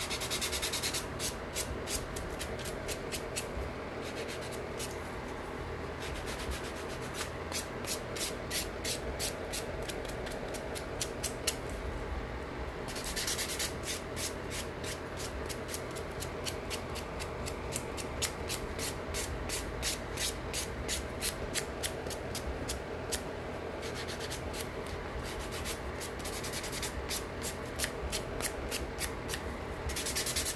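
Nail buffer block rubbing back and forth over long artificial nails in quick, even scraping strokes, about four a second, with a few short breaks.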